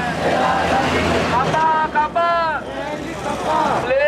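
A group of protesters shouting slogans together, with long drawn-out calls that rise and fall in pitch, the loudest about a second and a half in, over a steady hum of road traffic.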